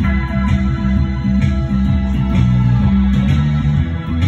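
Live instrumental rock from a band: an electric bass guitar playing a moving line of low notes under an electric guitar, over a steady beat of about two hits a second.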